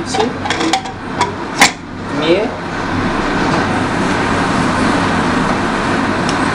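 Aluminium pressure cooker lid being fitted inside the rim and locked shut: a few light metal clicks, then one sharp metal clank about a second and a half in. A steady background rush runs underneath throughout.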